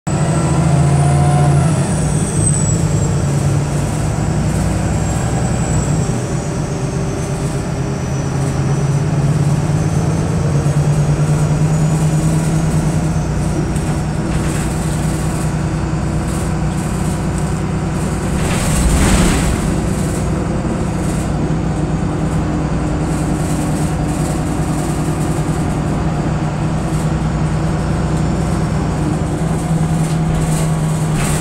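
VDL SB200 Wright Pulsar single-deck bus running, heard from inside the saloon: a steady low engine drone with a faint high whine that wanders in pitch through the first half. There is a brief louder rush of noise about two-thirds of the way through.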